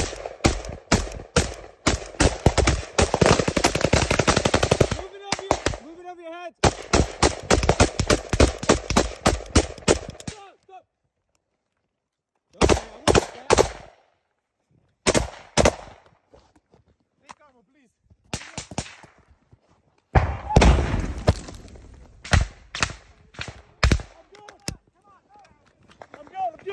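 Loud automatic rifle fire, the covering fire for a fighting withdrawal: long rapid bursts for about the first ten seconds, then, after a pause, shorter bursts with gaps between them.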